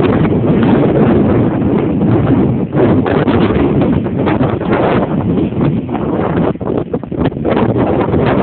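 Wind buffeting a phone's microphone: a loud, steady rumbling rush with frequent short knocks and rustles mixed in.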